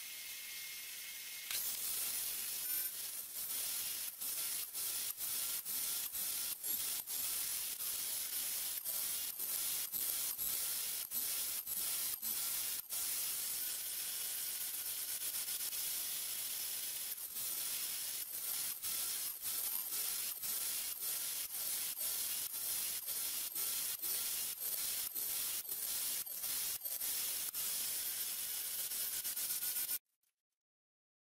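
A table-saw blade cutting a half-lap joint in a pine 2x4 held upright in a clamped jig. A steady motor whine gives way, about a second and a half in, to a continuous hissing cut with brief regular breaks about twice a second as the wood is worked across the blade.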